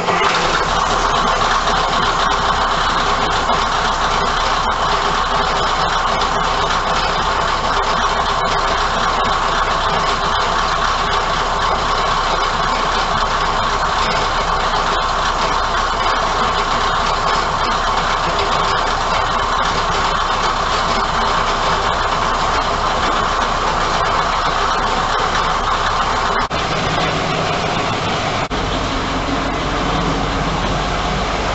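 Underfloor diesel engine of an old railcar idling, loud and steady, heard from directly above through the open floor hatches.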